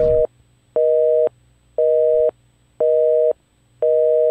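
Telephone busy signal: a steady two-note tone beeping about once a second, half a second on and half a second off, five beeps.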